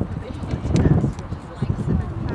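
Hoofbeats of a trotting Lipizzan horse on sand arena footing, under a low rumble that is loudest about a second in and again near the end.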